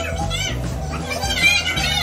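Background music with a steady bass line, under a group of women's excited, high-pitched voices calling out over each other.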